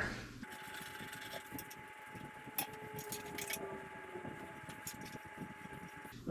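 Quiet garage room tone: a faint steady high whine with a few light clicks from handling near the middle.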